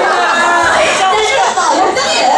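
Several women talking at once into handheld microphones.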